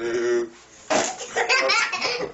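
Hearty laughter in quick bursts, with a sudden noisy blast about a second in.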